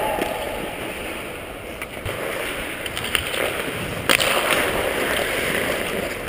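Hockey skate blades scraping and carving on rink ice, heard close up with rushing air on a skater-mounted camera, and a single sharp click about four seconds in.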